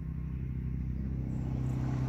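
A motor vehicle's engine running with a low, steady hum that grows gradually louder as the vehicle approaches.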